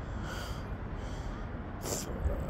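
A person's breathing close to the microphone: a faint breath about a third of a second in and a stronger, sharper intake of breath near the end, over a steady low background rumble.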